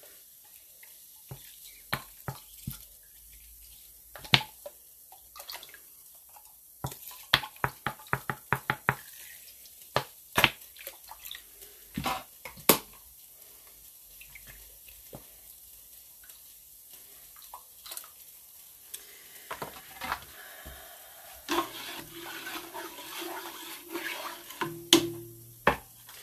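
Plastic squeeze bottle of yarn dye being handled and squirted over a pot of dye water: a string of small clicks, taps and squirts, busiest in the first dozen seconds. Water runs for a few seconds near the end.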